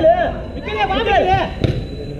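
High-pitched shouting on a football pitch during play, then one sharp knock of the ball being struck about one and a half seconds in.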